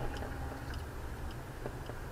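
Steady low rumble of a car's engine and tyres heard inside the cabin while driving, with a few faint clicks.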